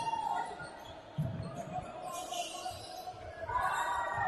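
A basketball being dribbled on a hardwood court, several bounces ringing in a large sports hall, with players' voices calling.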